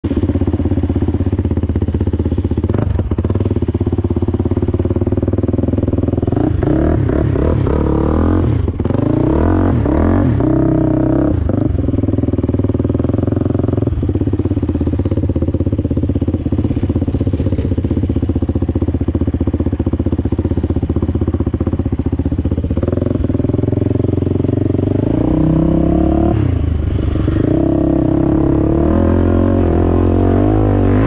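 Sport ATV engine running under load on a trail ride, its pitch rising and falling several times as the throttle is worked, most clearly about a quarter of the way in and again near the end.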